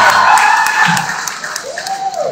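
Audience cheering and clapping, loudest at the start and dying away, with scattered sharp claps.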